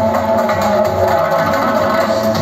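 Loud amplified dance music from a live band, playing continuously.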